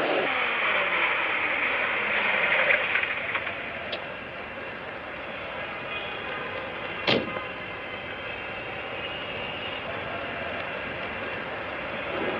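Street traffic noise from an old film soundtrack, louder in the first three seconds with a falling pitch, then settling to a steady lower level. A single sharp knock comes about seven seconds in.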